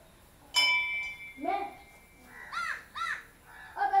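A brass temple bell struck once about half a second in, ringing and fading over about a second and a half. Later a crow caws two or three times in quick succession.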